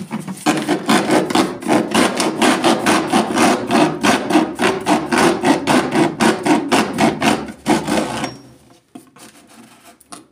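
Hand-held hacksaw blade sawing through a white plastic fitting in quick back-and-forth strokes, about four a second, stopping a little past eight seconds in.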